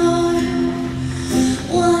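A woman sings a slow, sad song to her own acoustic guitar accompaniment. She holds long notes, with a change of note about one and a half seconds in.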